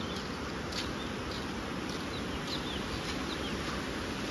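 Small birds giving short, high chirps several times over a steady outdoor hiss.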